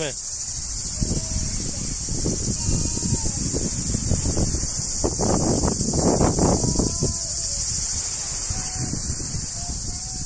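Insects singing in a steady, high-pitched chorus, with faint voices and chatter beneath it.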